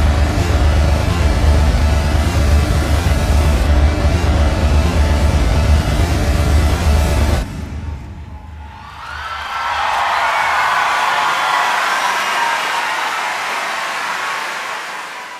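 Loud live pop music with a heavy bass beat that cuts off about seven and a half seconds in. After a short lull, the noise of an arena crowd cheering and screaming swells up and holds.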